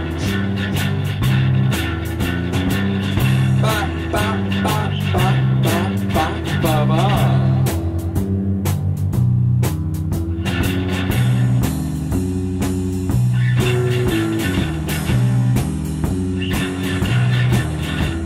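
Instrumental passage of a live psychedelic rock jam: electric guitar playing wavering, bending lines over a repeating bass riff and regular hits, the upper sound thinning out briefly around the middle before the full band comes back.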